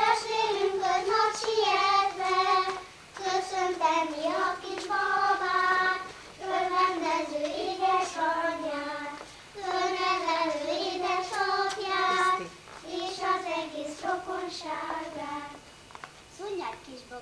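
A group of children singing a song together while dancing in a ring, the melody coming in phrases of a few seconds each with short breaks between them.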